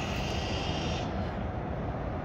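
Steady low outdoor rumble with a faint high whine that fades out about a second in.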